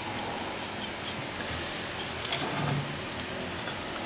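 Steady background hiss with a few faint light clicks a little over two seconds in, as a steel transmission band is handled.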